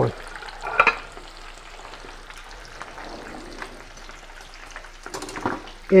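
Breaded coconut shrimp frying in a pan of hot oil: a steady, even sizzle.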